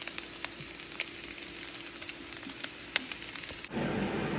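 Fried rice sizzling in a hot frying pan, a steady hiss with scattered crackles, as sesame oil is poured over it. Near the end it cuts off abruptly into a louder, duller rushing noise.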